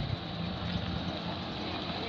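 Engine of a Wuling minivan ambulance running as it slowly pulls out and turns onto the paved lane: a steady low rumble.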